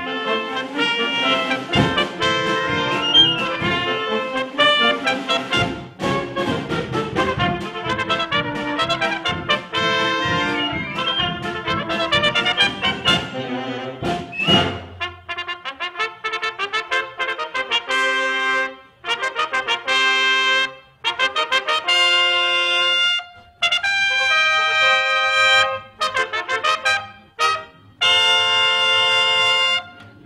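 A trumpet trio with a concert band playing a fast, full-band passage with percussion. From about halfway the texture thins to a series of loud, sustained brass chords separated by short breaks.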